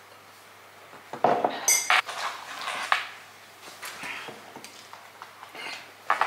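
Ceramic mugs set down on a hard tabletop: a few sharp knocks and clinks about a second in, then lighter clatter and handling sounds.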